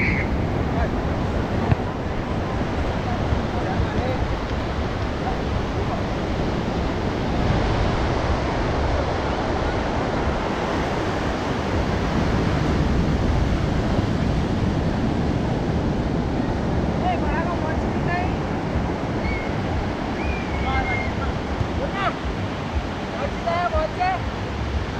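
Ocean surf breaking and washing up a sandy beach, a steady rush of waves. Faint distant voices come in near the end.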